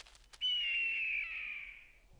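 A single long eagle screech sound effect, starting about half a second in and sliding slowly down in pitch as it fades.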